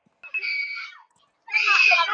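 A person screaming twice during a scuffle, picked up by an outdoor security camera's microphone. The first scream is held at one high pitch and starts just after the beginning; the second is louder, wavers in pitch and starts near the end.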